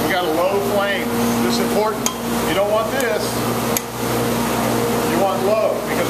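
A man talking, over a steady low hum.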